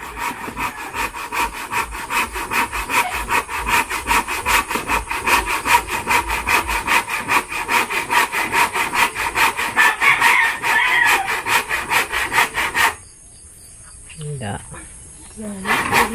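Hand saw cutting through a wooden crossbar in quick, even back-and-forth strokes, stopping about thirteen seconds in and starting again at the very end.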